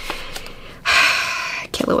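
A woman's sharp intake of breath through the mouth, lasting just under a second, after a moment of quiet. Speech begins right after it.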